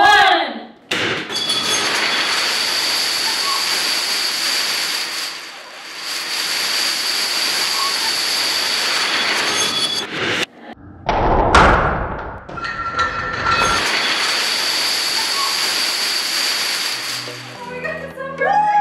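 Thousands of plastic toppling dominoes clattering down together in a continuous dense rush as a large domino structure collapses. The collapse is heard several times in a row, with a lower, heavier stretch of crashing around the middle. A brief excited cry is heard right at the start.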